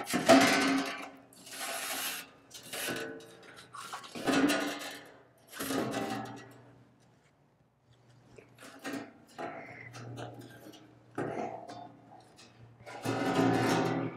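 Acoustic guitar music: plucked and strummed chords that come in separate, irregular bursts, each fading away, with a short lull partway through.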